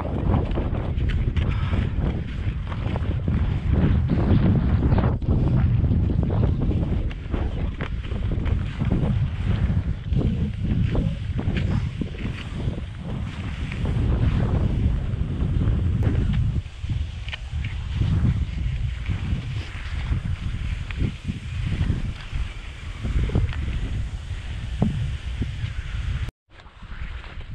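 Gusty wind buffeting the microphone, heavy in the low end and rising and falling, over the swish of cross-country skis gliding on packed snow with scattered short pole plants.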